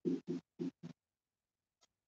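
Marker pen writing on a whiteboard: four quick scratching strokes in the first second.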